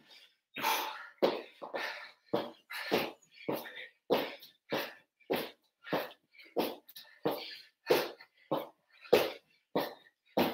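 A man breathing hard and rhythmically while exercising at full effort. He makes a short, forceful breath out about one and a half times a second, in time with the reps.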